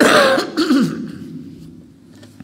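A man clearing his throat: two short, loud, voiced bursts within the first second.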